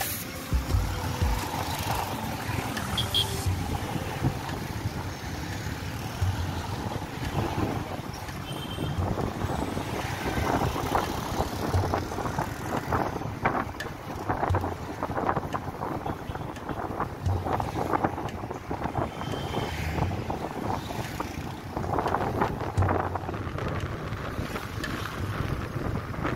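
Motorcycle engine running while riding through street traffic, with wind buffeting the microphone.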